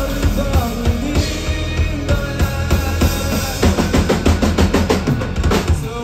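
Live rock band playing loudly through a club PA: electric guitars, bass and drum kit. In the second half the drums play a fast fill of rapid strokes, and the full band comes back in at the end.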